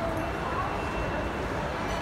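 Restaurant dining-room hubbub: indistinct chatter of diners and staff over a steady low rumble.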